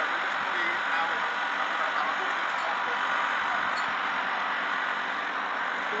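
Delivery lorry's engine running steadily while its unloading machinery works, a constant even noise with no change in level.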